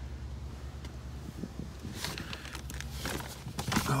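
Movement and handling noise as someone climbs into a car's driver seat: soft rustles and a few light knocks, busiest near the end, over a steady low hum.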